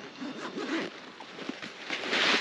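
A zip on a Forclaz 50 L hiking backpack being pulled in a few short rasping strokes in the first second, followed by quieter rustling of fabric as hands dig into the pack.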